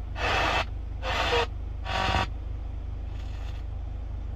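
Kia Sorento's factory FM car radio changing stations: three short bursts of static and snatches of broadcast in the first two seconds or so, muted in between, then a fainter burst past the three-second mark, over a low steady hum.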